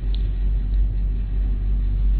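Steady low hum with an even background hiss, the noise floor of a sermon recording made at a microphone, heard in a pause between phrases.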